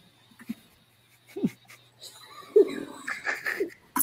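A man laughing in a played-back video clip. After faint clicks it starts softly about halfway in and grows louder near the end.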